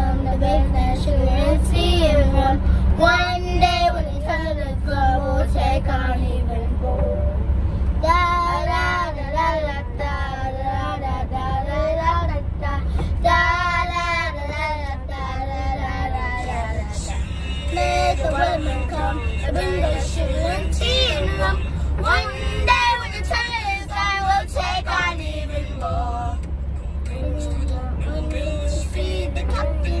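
Young girls singing together in phrases, over the steady low rumble of a moving van's cabin.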